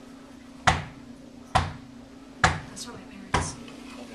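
Four sharp thumps, evenly spaced about a second apart, each dying away quickly.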